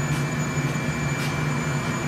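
Gas-fired glass furnace and its burner blower running with a steady low hum and rushing noise.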